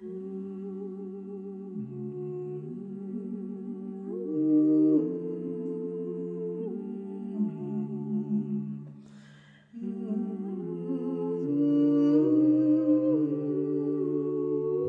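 A small a cappella vocal group singing wordless, held chords that change every second or so over a low moving bass part. The sound fades and breaks off briefly about nine and a half seconds in, then comes back in.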